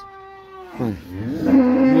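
Cattle mooing: a fainter, higher call that sags slightly in pitch, then a long, louder, low moo that starts about a second and a half in.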